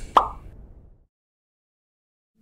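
A single short cartoon plop sound effect, a quick drop in pitch, fading out within about a second into dead silence.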